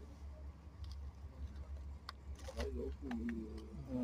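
Faint talk from people standing nearby, in the second half, over a low steady rumble and a couple of light clicks.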